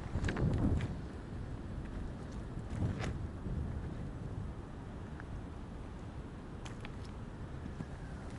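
Beach pebbles crunching and clacking together, with a louder cluster of knocks just after the start, another about three seconds in, and a few faint clicks near the end, over a steady low rumble.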